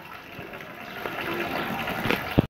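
Water pouring and splashing in a rooftop water tank, growing steadily louder.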